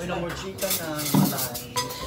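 Plates and spoons clinking as dishes are handed round and set down on a table, in a series of sharp clicks and clatters.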